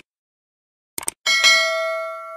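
Mouse-click sound effects, a quick double click at the very start and another about a second in, followed at once by a bright notification-bell ding that rings on and slowly fades.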